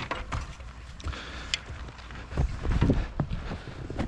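Climbing a snow-covered wooden ladder onto a flat roof: scattered knocks and scuffs of hands and boots on the rungs and roof edge, over a low rumble.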